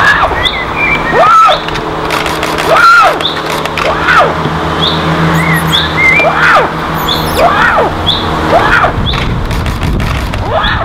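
A bird calling over and over, about once a second, each call rising and then falling in pitch, with short high chirps between the calls. Under them runs a steady low hum that stops near the end.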